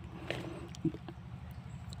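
Faint handling sounds of a thick woody tree root being cut from the trunk and pulled from wet soil: a few light knocks and scrapes, the clearest a little under a second in.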